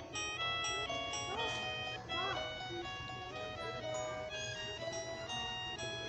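Holiday Time 7-inch toy record player playing a Christmas tune: a melody of short, steady notes that changes several times a second.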